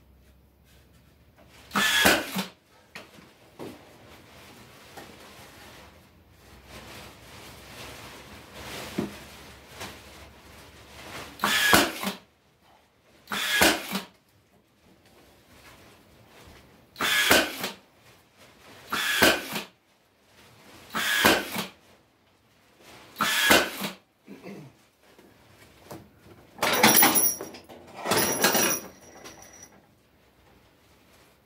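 Cordless brad nailer firing brads into old wooden trailer deck boards: about seven separate shots a couple of seconds apart, then two longer bursts near the end.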